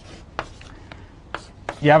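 Chalk on a blackboard as a small box is drawn: four sharp chalk taps and strokes, about half a second apart.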